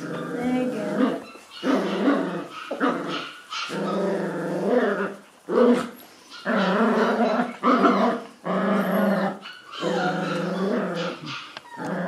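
Mudi puppy play-growling during a game of tug with a rope toy, in a run of long growls, each a second or so, with short breaks between.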